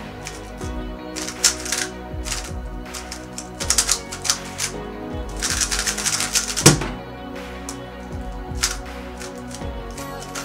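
Rapid clicking and clacking of a Cubicle Labs–modded MoYu WeiLong GTS2 M magnetic 3x3 speedcube being turned in fast bursts during a timed solve, with a dense run of turns in the middle. Background music plays under it.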